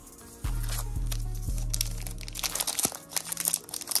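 Background music with a low bass line, under the rustling and crinkling of hockey trading cards being flipped through by hand; the card handling gets louder in the second half.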